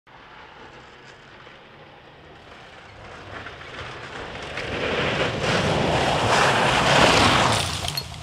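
Subaru WRX STI rally car coming fast on a gravel road, its engine and the thrown gravel and tyre noise growing steadily louder to a peak about seven seconds in, then falling away sharply.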